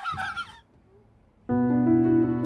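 Laughter trailing off in short high breaths, then a moment of near silence before music starts with a held chord about a second and a half in.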